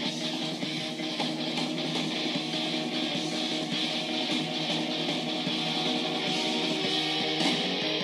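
Rock music with electric guitar playing through a small aluminium-cased Bluetooth speaker, with almost no bass.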